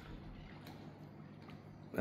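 Quiet outdoor background: a faint, even noise with a low steady hum and no distinct sound event.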